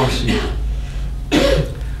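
An elderly man coughs once, sharply, about a second and a half in, just after a spoken phrase ends. A steady low hum sits underneath.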